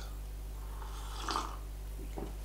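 A short, soft sip from a coffee mug about a second in, over a steady low electrical hum.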